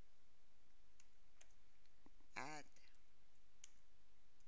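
A few separate keystroke clicks on a computer keyboard as code is typed, spaced irregularly, with a short voiced hesitation sound about two and a half seconds in.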